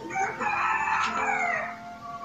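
A rooster crowing once: one loud call of about a second and a half that falls in pitch as it ends.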